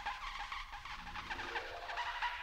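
Live electronic music: a dense texture of short chirping glides in rapid succession, high in pitch, over a steady low hum.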